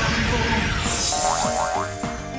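Bumper jingle music with a whoosh transition effect about a second in, followed by three quick rising chirps.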